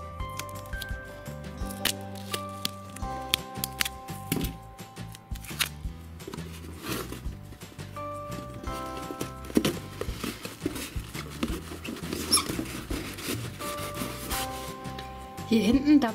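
Background music with a steady run of held notes, over the short sharp crackles of silver duct tape being torn and pressed onto a cardboard box wall.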